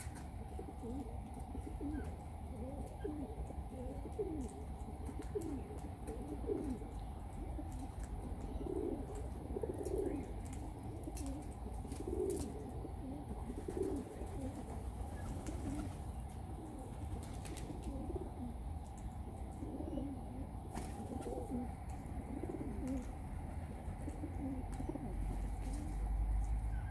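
A flock of little corellas feeding with soft, low, repeated calls, a note every second or so, and faint sharp clicks among them. A low rumble grows near the end.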